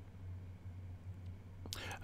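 Faint room tone with a low, steady electrical hum in a pause between speech. A brief faint sound comes just before the talking resumes at the end.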